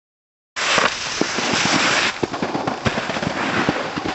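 A snowboard scraping loudly across packed snow, the hiss cutting off suddenly about two seconds in as the board leaves the snow, followed by irregular crackling clicks.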